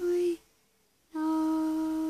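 A woman's unaccompanied voice holding sung notes at the close of the song. A held note ends about a third of a second in, and after a short pause she holds one long steady note.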